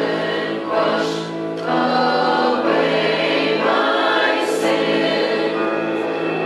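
Church choir of men's and women's voices singing together, the chords held and sustained.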